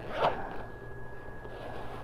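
Tote bag's zipper pulled briefly about a quarter second in, followed by soft rustling as the bag's fabric lining is handled.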